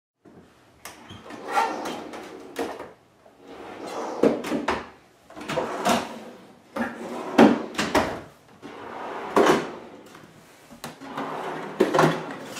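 Homemade wooden corner drawers on metal side-mounted slides being pulled open and pushed shut over and over, about six times: each stroke a rolling slide that ends in a sharp knock as the drawer stops.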